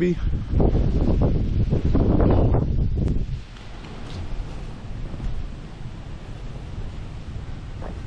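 Wind buffeting the microphone, a loud low rumble for about the first three seconds, then dropping to a softer, steady outdoor hiss.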